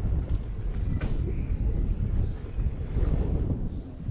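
Wind buffeting the microphone of a helmet or body camera on an electric unicycle moving at about 12 km/h, a heavy fluctuating low rumble, mixed with the rolling of the tyre over the rough dirt trail.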